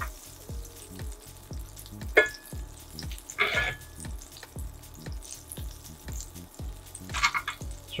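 Butter melting and sizzling in a hot cast-iron pan, crackling and popping softly, while metal tongs push it around and clink against the pan, sharpest about two and three and a half seconds in.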